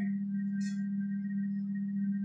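A steady low hum with faint higher steady tones above it, and one brief faint scratch of a marker on a whiteboard less than a second in.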